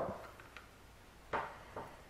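Two short clicks of multi-tool pliers working against the stiff plastic barrel of a pair of binoculars, about a second and a half in, the first louder than the second.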